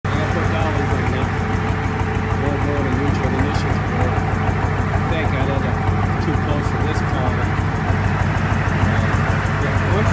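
Tow truck's engine running steadily with a deep, even low hum, while voices talk in the background.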